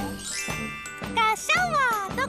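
A tinkling chime jingle in children's TV music, followed about a second in by a few short, high, sing-song voice calls that bend up and down in pitch.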